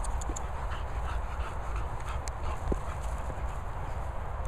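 Dogs' paws thudding and rustling on grass as they run and play, with scattered light ticks, over a steady low rumble on the microphone.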